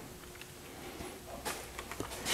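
Quiet room tone with a faint low hum and a few soft, faint clicks.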